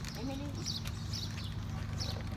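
Outdoor ambience: a steady low rumble with a woman's soft laugh near the start and several short, high bird chirps.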